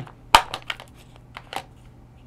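A small clear plastic storage case snapped open: one sharp click, then a few lighter plastic clicks and knocks as the circuit-board module inside is handled and lifted out.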